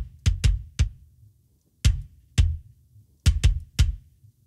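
Recorded kick drum played soloed, a run of about ten hits mixing full strokes and softer ghost notes, with a gap of about a second near the middle. It is being pitch-shifted down in the Torque plugin as it plays, which gives it a deeper, sub-like tone.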